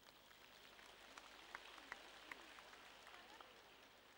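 Near silence in a large hall, with faint scattered applause from the audience.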